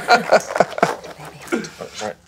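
Speech: a woman and a man exchanging a few short words.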